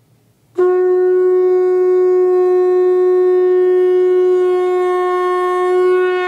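One long, loud note from a blown horn. It starts sharply about half a second in and is held at a single steady pitch to the end.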